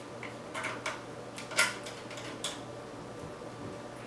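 Small plastic clicks and rattles of a GoPro mount and extender arm being fitted and screwed together on a motorcycle helmet: a handful of short ticks, the loudest about one and a half seconds in, over a steady low hum.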